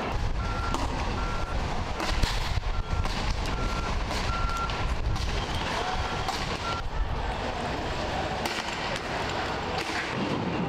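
A short, high electronic beep at one steady pitch repeats roughly once a second, with uneven gaps, for about the first seven seconds. Beneath it runs a steady low rumble of outdoor noise, with a few sharp bangs, the loudest about two seconds in.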